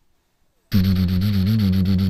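A loud, buzzing drone that starts suddenly under a second in and holds a low, slightly wavering pitch: the show's intro sound being started again.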